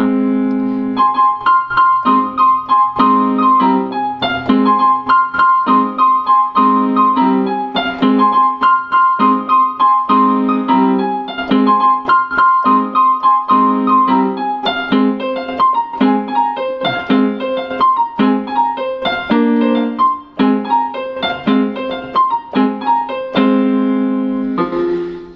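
Yamaha portable keyboard (PSR-E223) played with both hands: a melody with a held high note that recurs every few seconds, over chords struck in a steady rhythm.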